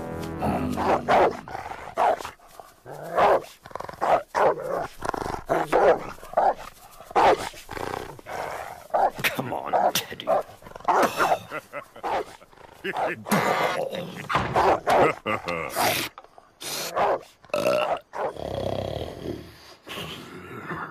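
A dog barking and growling over and over, over background music.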